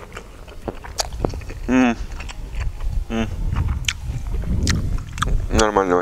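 A man tasting food, with a few short wordless murmurs about two and three seconds in and again near the end, and scattered mouth clicks, over low wind noise on the microphone.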